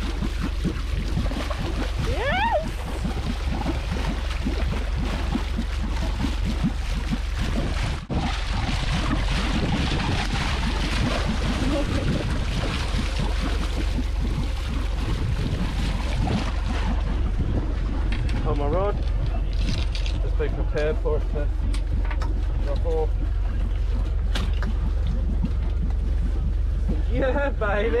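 Steady wind and water noise aboard a sailboat under way, over a constant low drone, with a few short excited voice calls in the second half.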